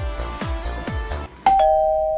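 Electronic dance music with a steady kick-drum beat cuts out a little after a second in. It gives way to a loud two-note ding-dong chime, high then low, that rings on as a transition sound effect.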